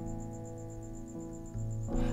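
Sustained piano chords played on a keyboard, ringing and fading between sung lines, with a new chord struck about one and a half seconds in. A faint, rapidly pulsing high tone runs underneath.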